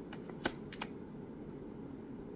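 A few light clicks of a clear plastic nail stamper and metal stamping plate being handled, the sharpest about half a second in and two softer ones just after, over a faint steady low hum.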